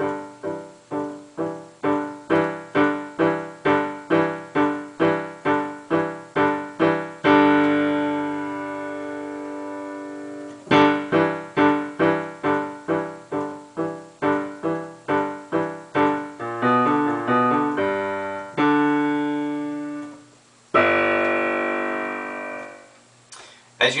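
Digital piano playing a left-hand part of staccato fifths and sixths at a steady tempo, about three strikes a second, broken by held notes. It ends on a long final note held under a fermata, an octave lower.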